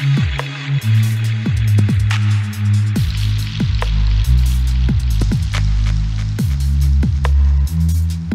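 Electronic background music with a deep bass line and a steady beat of kick drums that drop in pitch, over regular hi-hat clicks.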